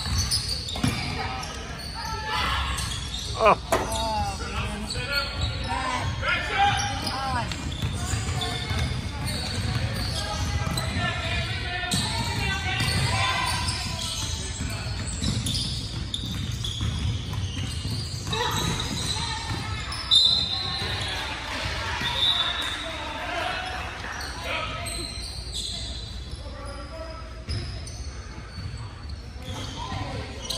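Basketballs bouncing on a hardwood gym floor during a game, with indistinct calls from players and spectators echoing in the large hall.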